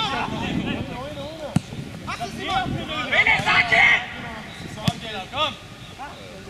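Football players shouting calls across the pitch, with two sharp thuds of a football being kicked, about one and a half seconds in and again near five seconds.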